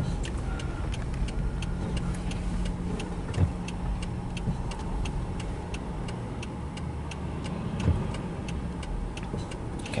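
A car's turn-signal indicator ticking steadily, about two clicks a second, over the low rumble of the car cabin. Two soft knocks come about three and a half and eight seconds in.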